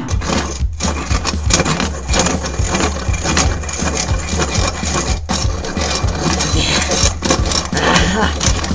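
Hand-crank pencil sharpener grinding pencils: a continuous rough grinding with a low rumble underneath.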